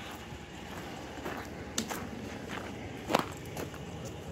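Footsteps on a gravel road, with a few sharp clicks along the way.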